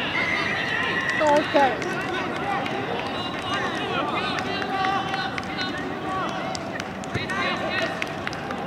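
Overlapping shouts and calls of rugby players on an outdoor pitch, with two louder shouts about a second and a half in.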